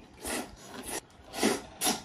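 A person slurping wide, flat huimian wheat noodles from a bowl: about four short, noisy slurps in quick succession.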